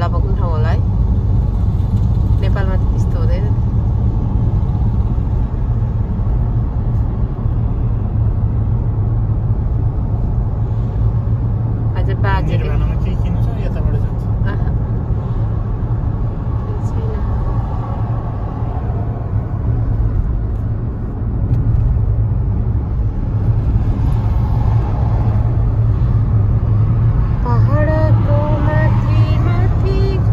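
Steady low rumble of road and engine noise inside a moving car's cabin, with a few short stretches of talk.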